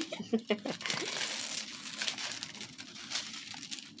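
The plastic film over a diamond painting canvas crinkling and rustling as the canvas is handled and lifted, with small crackles, fading toward the end.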